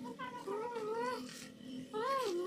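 A young child's high-pitched voice in a few drawn-out, wavering sing-song sounds.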